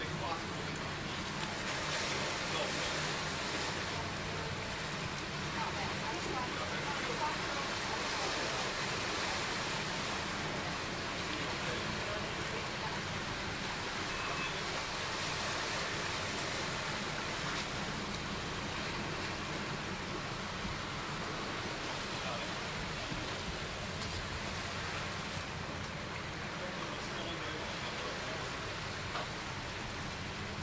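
Steady outdoor background noise: an even hiss with a low, constant hum underneath and faint, indistinct voices.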